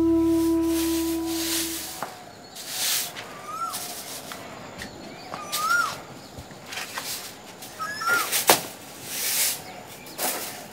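A held flute note stops about two seconds in. Then come repeated half-second hissing swishes, about five in all, with short rising-and-falling chirps between them and a sharp click near the end.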